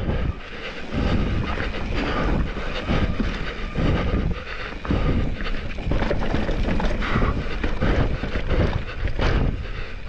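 Deviate Claymore full-suspension mountain bike descending a rough forest trail at speed: tyres rolling and skidding over dirt, roots and rocks, with many short knocks and rattles from the bike over the bumps and a steady rush of wind on the microphone.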